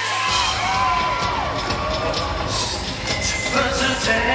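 Live pop performance over the arena sound system: singing with a full band, whose bass and drums come in a moment in. Audience cheering is mixed in.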